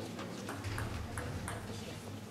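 Table tennis ball being hit back and forth in a rally: four sharp clicks of the ball off the table and paddles in quick succession, about a third of a second apart, starting about half a second in.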